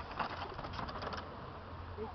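Mountain bike rolling close past on a dirt descent: a rapid run of clicks and rattles from the bike and its tyres on the track for about the first second, then fading as it moves away.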